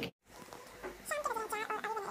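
Repeated high-pitched animal calls, rising and falling in pitch, starting about a second in.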